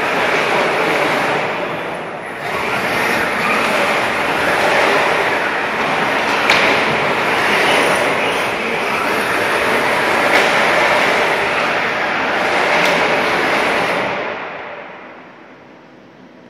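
Magnetar heavyweight combat robot's brushless drive motors running as it drives and turns on the arena floor, held down by magnets, with a few sharp knocks along the way. The sound dies away near the end as the robot stops.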